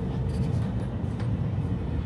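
Steady low rumble of a Deutsche Bahn ICE high-speed train running, heard from inside the carriage, with a faint steady hum above it.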